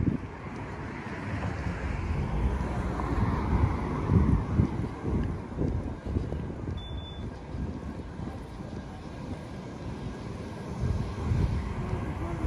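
Cars passing on a city street, with wind rumbling on the microphone.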